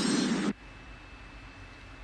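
The tail of a loud music-and-pop sound effect, which cuts off suddenly about half a second in, leaving quiet room hiss with a faint steady high tone.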